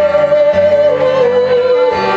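Live music: a woman singing one long wordless note that steps down in pitch a little under halfway through, over instrumental accompaniment.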